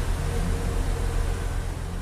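A 2013 Chevrolet Camaro's 3.6-litre V6 idling steadily, a low rumble with a constant hum, fading away toward the end.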